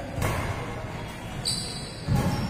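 Badminton play on an indoor court: a racket stroke on a shuttlecock about a quarter of a second in, thudding footwork, and a short high squeak near the end, typical of court shoes braking in a lunge.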